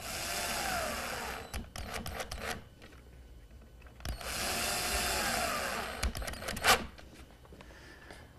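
Power drill-driver driving two bronze screws into a small wooden block, one after the other. The motor's pitch rises then falls on each screw, and a few light clicks follow each run.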